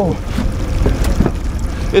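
Low, steady rumble of a fishing boat on open water, with a few faint clicks during the fight with a king salmon.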